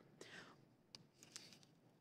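Near silence: room tone, with a couple of faint ticks about a second in.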